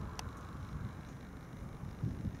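Quiet, low, uneven outdoor rumble, with one faint short click near the start.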